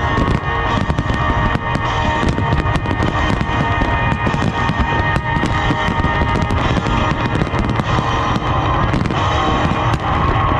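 Aerial firework shells bursting in quick succession, a dense stream of bangs and crackles throughout, with the display's music soundtrack playing underneath.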